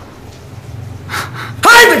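A short breathy gasp about a second in, over a faint low hum, then a loud voice speaking near the end.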